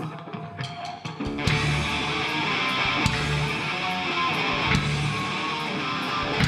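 Live punk rock band playing electric guitars, bass and drums, starting a song. Thin guitar sound at first, then the full band comes in loud about a second and a half in and plays on steadily.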